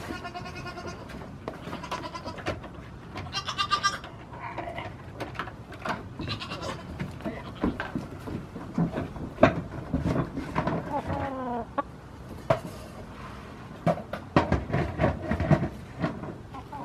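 Goats bleating several times, with wavering, quavering calls near the start, around three to four seconds in and about six seconds in, and a falling call near eleven seconds. Hooves knock and clatter on the shed's wooden floorboards between the calls.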